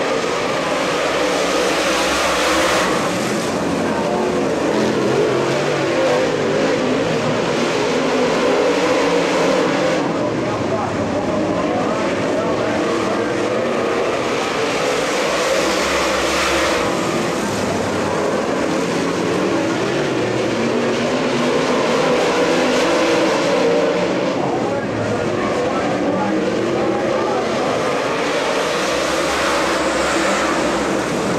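Several Super Late Model dirt-track race cars' V8 engines running hard as the pack races around the oval. The engine noise swells and eases as the cars pass.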